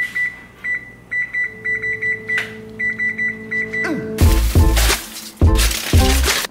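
High-pitched electronic beeping at a single pitch, in quick irregular groups. About four seconds in, a falling glide leads into music with a heavy bass beat.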